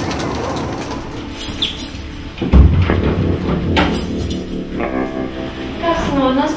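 Horror film soundtrack: a steady hiss, then a sudden low boom about two and a half seconds in, followed by sustained held tones.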